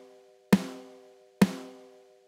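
A snare drum sample triggered from Logic Pro's Quick Sampler in one-shot mode, struck twice about a second apart. Each hit rings with a pitched tone that fades away fully before the next, because one-shot mode lets the whole sample tail play.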